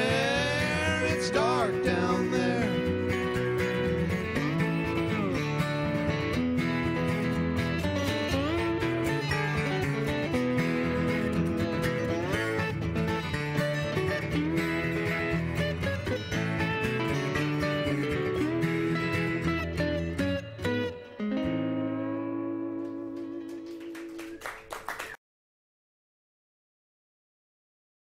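Dobro resonator guitar with sliding notes over a strummed acoustic guitar, playing the song's instrumental ending. A final chord rings out for a few seconds, then the sound cuts off suddenly just before the end.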